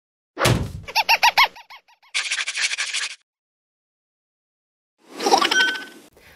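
Intro sound-effect sting over a black screen: a sharp hit, a quick run of chirping tones and a buzzing stretch, then after a pause of about two seconds a swelling whoosh with a held tone near the end.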